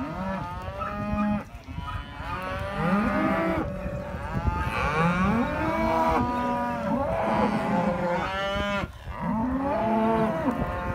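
A mob of heifers mooing, many calls overlapping almost without a break, some rising and some falling in pitch.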